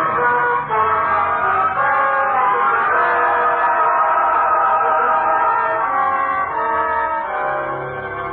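Orchestral music with brass, sustained chords that shift every second or so, in a thin, narrow-band old recording.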